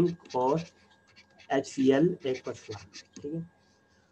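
A man speaking in short, broken phrases with pauses between them.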